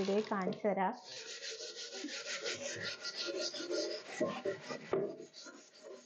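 A scrubber rubbing around the inside of an aluminium pot in quick, scratchy back-and-forth strokes as it is scoured clean. The scrubbing starts about a second in and keeps going.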